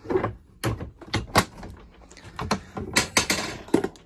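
A red plastic Milwaukee drawer tool box being handled and a drawer pulled open: a series of sharp clacks and knocks, about eight in all, as it slides and its contents rattle.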